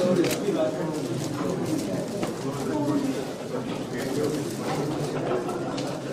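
Indistinct murmur of many people talking over one another, with a few sharp clicks scattered through it.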